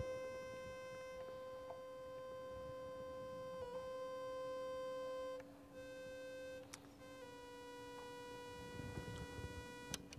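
Synthesizer holding one steady electronic tone with a ladder of overtones. Its timbre shifts slightly a few times, and there is a brief click about two thirds of the way through.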